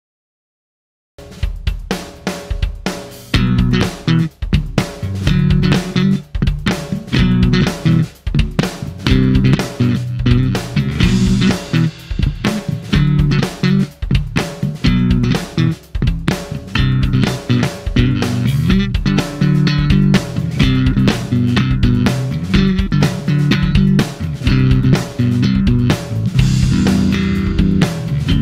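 Fingerstyle electric bass on a Fender bass, played over a drum-kit groove with hi-hat and bass drum. The music starts about a second in after silence.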